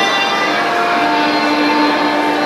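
Violin bowed in South Indian Carnatic style, holding a long steady note from about a quarter of the way in.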